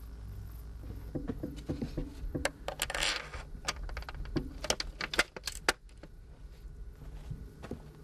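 Light metallic clicks and taps as solar module frames are handled and fitted on their mounting rack, with a short scrape about three seconds in.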